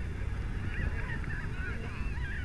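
Many short, overlapping honking calls that rise and fall in pitch, over a steady low rumble.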